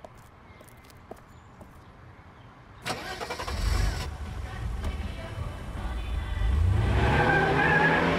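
A car engine starts with a sharp catch about three seconds in and runs rough and low, then revs up with a rising pitch and gets louder as the car pulls away near the end.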